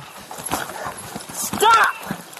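Recorded sound of a physical struggle on the ground: irregular knocks, thumps and rustling as an officer and a man wrestle. A short voice sound rises and falls near the end.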